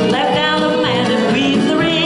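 Country square-dance music: a man and a woman singing a duet together over a country backing track, their voices wavering with vibrato.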